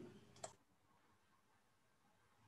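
A single sharp click about half a second in, then near silence: faint room tone.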